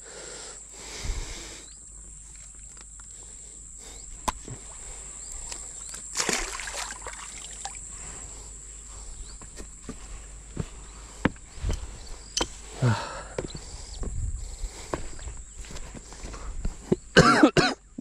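Handling noises and footsteps as a snakehead fish caught on a set line is lifted from the water and carried onto a gravel bank: scattered light clicks and scuffs, with a few short throat sounds or coughs from the angler.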